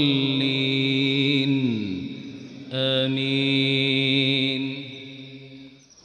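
A man's voice chanting Quran recitation into a microphone in long held notes. The first note slides down and ends about two seconds in. After a short pause a second long note is held and fades out near the end.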